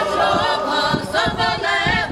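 Mixed folk choir of men and women singing a shchedrivka, a Ukrainian New Year carol, in several voices.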